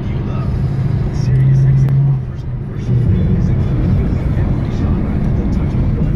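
Ford Mustang's engine and road noise heard from inside the cabin while driving: a steady low drone that dips a little past two seconds in and comes back about a second later.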